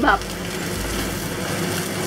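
Salmon fillet frying skin side down in hot oil in a cast iron pan, a steady sizzle.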